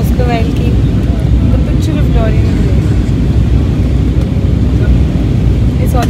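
Steady low roar of an airliner cabin in flight, engine and airflow noise, with faint snatches of passengers' voices over it.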